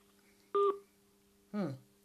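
Short electronic telephone beep on the line, followed about a second later by a brief tone falling in pitch, over a faint steady hum.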